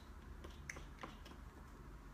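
A few faint, sharp clicks, three within about the first second, over a low steady hum: small hard objects being handled.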